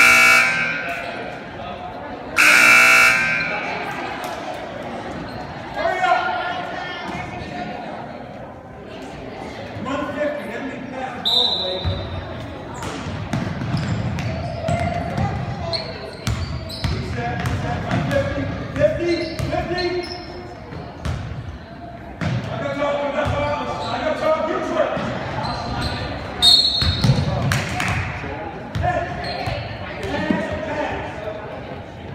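Basketball bouncing on a hardwood gym floor during play, with players' and spectators' voices echoing in the hall. Two loud, pitched blasts sound in the first three seconds, and the strikes of the ball come thick from about twelve seconds in.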